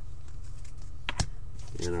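Light clicks and taps of trading cards being handled and flipped through, with one sharper click about a second in, over a steady low hum.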